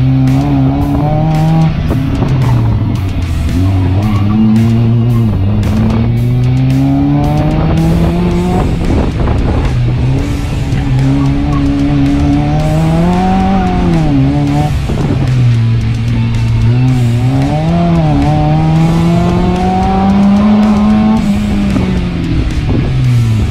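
Mazda MX-5 four-cylinder engine under hard driving on an autocross course, the revs climbing under acceleration and dropping sharply on lifts and shifts, over and over.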